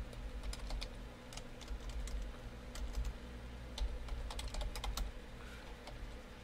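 Typing on a computer keyboard: irregular keystrokes, some in quick runs, over a low steady hum.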